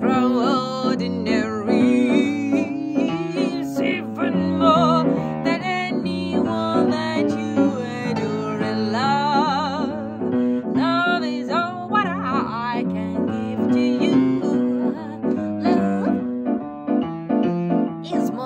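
Jazz piano solo, chords and melody played throughout, with brief wordless vocal lines with vibrato around the middle.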